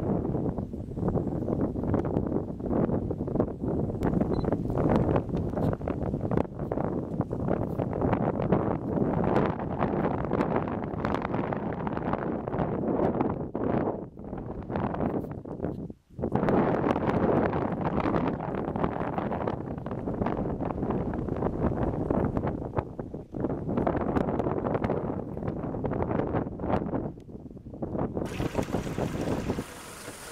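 Wind buffeting the camera microphone: a heavy, fluctuating rumble with no steady tone, broken off by a brief dropout about halfway through and giving way to a quieter hiss near the end.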